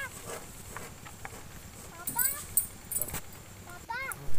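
An animal's short rising calls, a quick run of them about two seconds in and another at the very end, over faint outdoor background with a few clicks.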